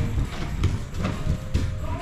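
A few irregular sharp knocks and thuds of bodies and feet hitting foam grappling mats as a standing pair is taken down to the ground, with background music running underneath.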